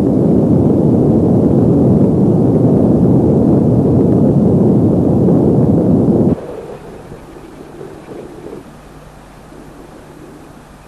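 Loud, deep rumbling of an explosion or volcanic eruption sound effect that cuts off abruptly about six seconds in, leaving a much quieter low rumble with a faint steady hum.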